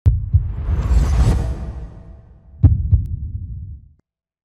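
Logo-intro sound effects: a deep low rumble under a whoosh that swells and fades, then two deep thuds about a third of a second apart that die away.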